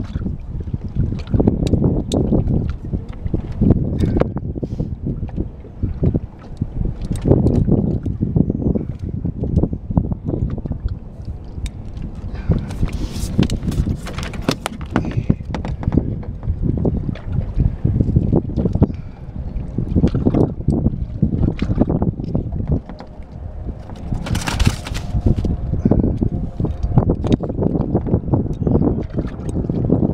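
Gusty wind buffeting the microphone over water noise around a small open boat, with scattered light clicks and two short hissing bursts, one midway and one about five seconds before the end.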